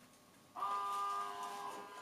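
Electrical hum from a shower booster pump's plug-in transformer and magnetic flow switch. It starts suddenly about half a second in as the unit powers up, then holds a steady pitch, easing off slightly.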